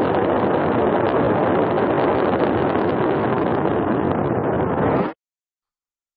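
Sound effect of Starkiller Base's superweapon firing its beam: a loud, steady, rough rushing noise that cuts off suddenly about five seconds in.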